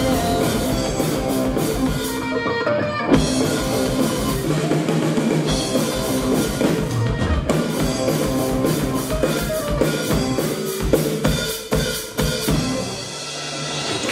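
Live indie rock band playing an instrumental passage on electric guitars and a drum kit, the closing bars of a song.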